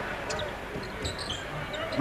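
Basketball game sound from the arena floor: a steady crowd murmur with a ball dribbling on the hardwood court and a few short, high sneaker squeaks.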